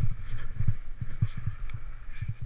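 Skis turning down a steep powder slope, heard through a camera worn by the skier as irregular low thuds and rumble, about four or five a second, over a faint snow hiss.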